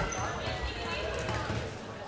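Sports hall sound during a floorball match: voices calling and chattering, with light knocks of sticks, the ball and feet on the court floor.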